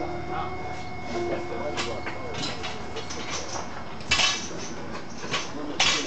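Metal clanks and clinks of a loaded barbell and its plates being handled, with two sharper strikes, one about four seconds in and one near the end, over faint voices in the room.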